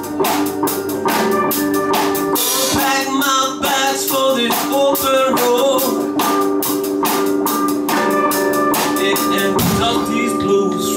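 Live electric blues band playing: electric guitar and bass guitar over a drum kit keeping a steady beat.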